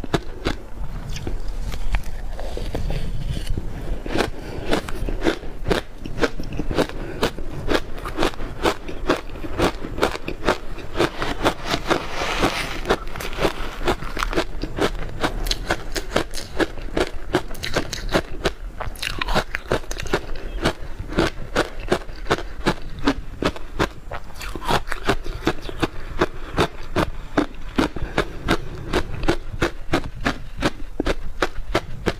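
Ice coated in matcha and milk powder being bitten and chewed, with a rapid, unbroken run of crisp crunches, several a second.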